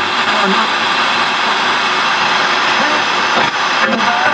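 Radio static hiss from a Crown CSC-850 boombox as its tuning dial is turned between stations. Brief snatches of broadcast voices break through about half a second in and again near the end.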